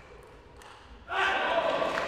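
Faint clicks of a table tennis ball being hit and bouncing in a rally. About a second in, the spectators in the hall burst into loud cheering and shouting as the point is won.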